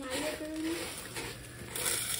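Spatula stirring crisp Fruity Pebbles cereal into melted marshmallow in a saucepan, a soft scraping and rustling. A short hummed voice sounds in the first second.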